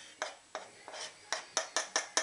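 A run of sharp clicks from a spoon tapping and scraping on a chopping board tipped over a glass casserole dish, knocking the last garlic off into it. The taps come closer together in the second half.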